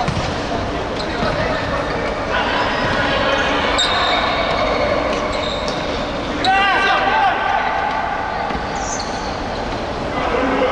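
Indoor futsal play: the ball is kicked with sharp knocks on the court while players shout to each other, the loudest shout about six and a half seconds in.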